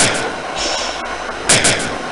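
Looped noise-music collage: harsh bursts of three or four quick, clattering strokes with a falling sweep beneath them, one at the start and another about a second and a half in, over a steady hiss.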